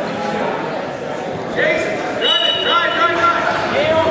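Crowd murmur at a wrestling match, then loud shouting voices from about halfway through, several raised calls overlapping.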